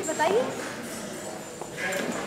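Speech only: a spoken word at the start, then a pause in the talk filled with low room background.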